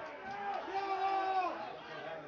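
A man's long held shout of celebration just after a goal, lasting about a second and a half and falling in pitch as it ends, with other voices faintly behind it.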